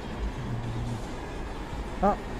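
Steady low rumble of city street noise and traffic, with faint music in the background.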